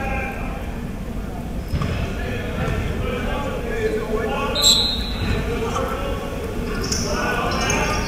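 Echoing gymnasium ambience of background voices and crowd chatter, with a basketball bouncing on the court and a brief high squeak about halfway through.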